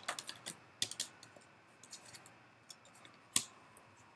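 Tarot cards being shuffled and handled: a few sharp, irregular card clicks and snaps, the loudest about three and a half seconds in.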